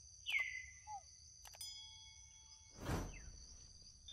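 Steady high-pitched insect chorus, continuous throughout. About a quarter second in comes a brief squeak falling in pitch, a few light clicks follow, and near three seconds there is a short, duller rustling burst.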